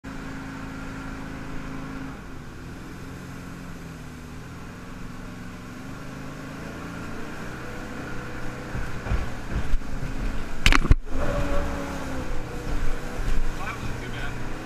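A jet boat's Ford 460 V8 with a Berkeley jet pump running steadily, heard from inside the cabin, its note dropping a little about two seconds in. From about eight seconds in the boat is in whitewater: the sound grows louder and rougher with uneven thumps from the hull and water, and a sharp knock at about ten and a half seconds.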